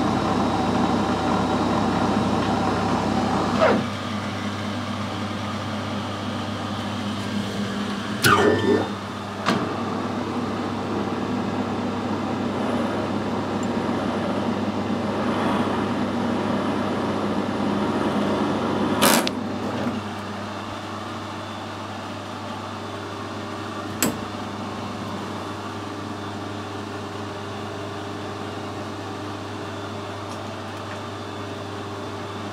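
Metal lathe running while screw-cutting a BSP thread in a brass fitting: a steady motor and gear hum with the tool cutting. There are a few sharp knocks, the loudest about eight and nineteen seconds in, and the running sound drops in level around four and twenty seconds in.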